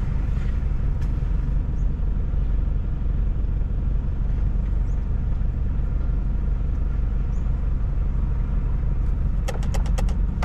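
A 4WD's engine idling, heard from inside the cabin as a steady low hum. A few sharp clicks come right at the end.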